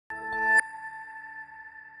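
Electronic news-programme ident sting: a synth chord swells up and cuts off about half a second in, leaving a high steady tone ringing on and slowly fading.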